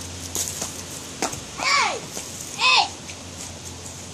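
Two short, high-pitched wordless yells from a child, each rising and then falling, about a second apart, with a few light clicks in between.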